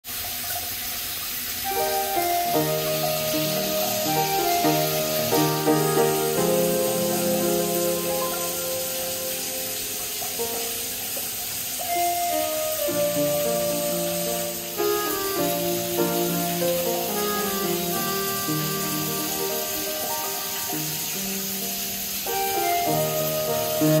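Background music, a melody of changing notes, over the steady hiss of water falling from a ceiling rain shower head.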